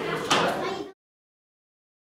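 A sharp knock about a third of a second in, over voices, then the sound cuts off abruptly to total silence before the first second is out.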